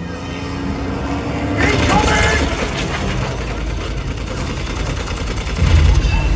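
Stunt motorboat engine running steadily as it crosses the lagoon, with a shout and a louder noisy stretch about a second and a half in, and a heavy low thump near the end.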